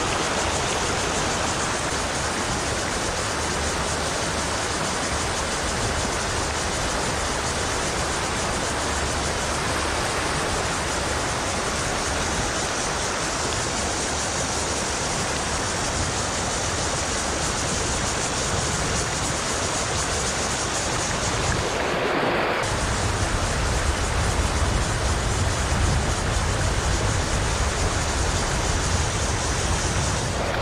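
Fast river water rushing steadily over rocks and rapids. About two-thirds of the way through it breaks off briefly, then runs on a little louder and deeper.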